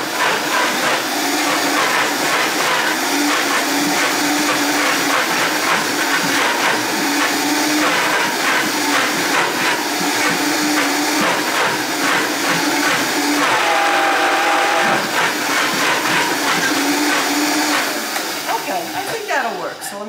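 Vitamix blender motor running steadily, churning a thick cashew-and-date frosting while the tamper is pushed down into the jar. Near the end the motor is switched off and spins down with a falling pitch.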